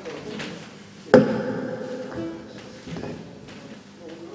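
A guitar chord struck once, about a second in, ringing out and fading over about a second.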